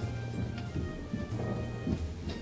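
Low rumbling and soft thuds from overhead, which she takes for someone moving about on the roof, under quiet background music.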